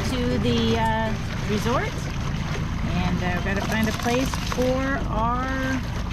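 A voice with held and sliding pitched notes, like singing, over a steady low rumble of wind and water.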